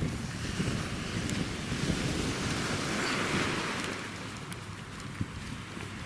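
Wind buffeting the camera microphone as a rough low rumble, over a steady rushing hiss that swells around the middle.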